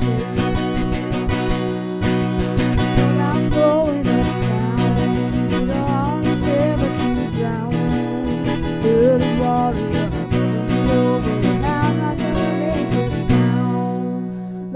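Acoustic guitar strummed in a steady country-folk rhythm, with singing over it through much of the passage. Near the end the strumming stops and the last chord is left ringing.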